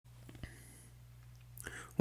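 Quiet room tone with a steady low hum, a small click about half a second in, and a short intake of breath near the end.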